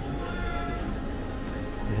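Background music over the hubbub of a busy indoor shopping arcade, with a short, high, wavering note about half a second in.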